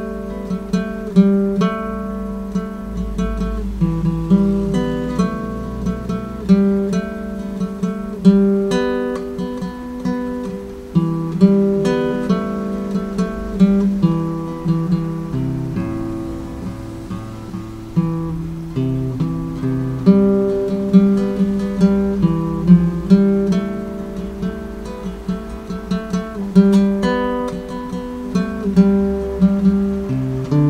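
Nylon-string classical guitar playing a hymn melody slowly, note by note, with bass notes underneath.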